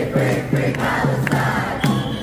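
A large crowd of protesters chanting and shouting together in a steady rhythm.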